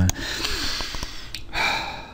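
A man breathing close to the microphone between phrases: a breath about a second long, then a second, shorter breath near the end.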